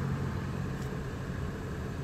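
Steady low hum of a car idling in stopped traffic, heard from inside the cabin.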